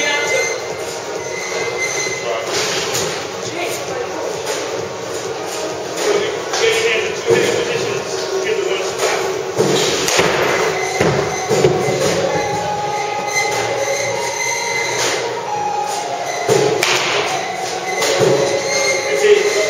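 Baseballs and bats in an indoor batting cage: scattered sharp thuds and knocks over a steady rumbling background and indistinct voices.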